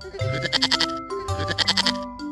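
A goat bleating twice, each bleat a wavering, quavering call, over a children's music track with mallet-instrument notes.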